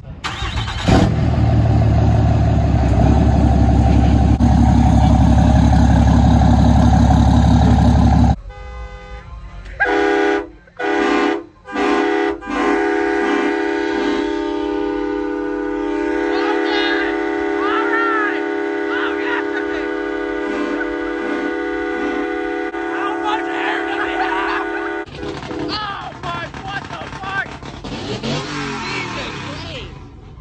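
Truck air horn sounding three short blasts about ten seconds in, then holding a long chord of several steady notes for about twelve seconds before cutting off. Before it, a loud, deep, dense sound fills the first eight seconds or so.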